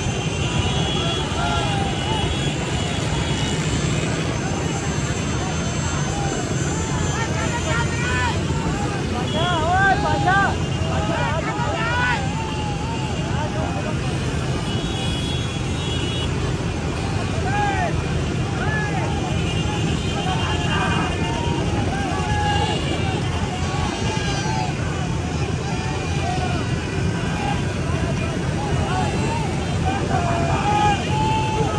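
Steady drone of many motorcycle engines and wind rushing past the microphone while riding in a crowded convoy, with repeated short shouts and whoops from the riders throughout.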